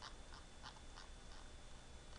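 Faint ticking of a computer mouse's scroll wheel, about five separate clicks over the first second and a half.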